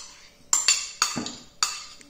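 A spoon knocking and scraping against a ceramic bowl as chopped smoked salmon is tapped out into a glass mixing bowl: about five sharp clinks at uneven intervals, each ringing briefly.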